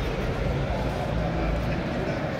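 Busy indoor hall ambience: indistinct crowd chatter over a steady low rumble.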